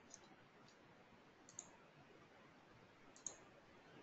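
Near silence with three faint computer mouse clicks spread across a few seconds.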